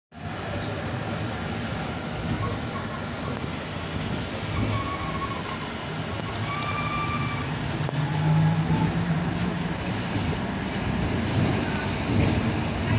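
Cabin noise inside a Škoda 27Tr Solaris articulated trolleybus on the move, heard at the articulation joint: a steady low running noise, with a few brief faint whines around the middle.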